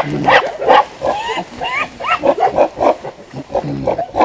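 Male mountain gorillas calling during an interaction: a rapid series of short, harsh calls, some sliding up and down in pitch.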